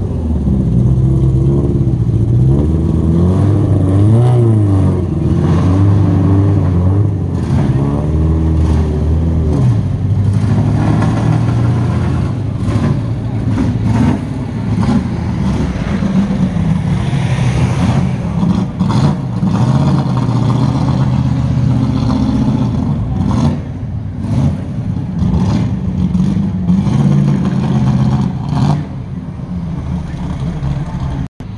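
Rally car engines running and revving as the cars drive slowly past, their pitch rising and falling, mixed with passing road traffic.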